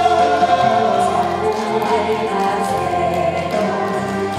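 A woman singing a Korean trot song into a microphone over an instrumental backing track, amplified through a PA.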